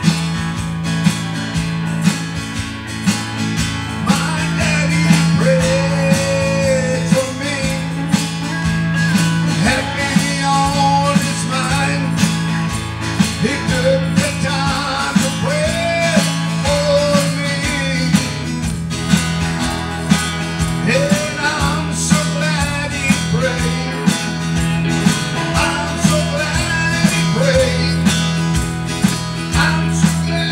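A man singing a gospel song to his own acoustic guitar strumming. The guitar plays alone for the first few seconds before the voice comes in.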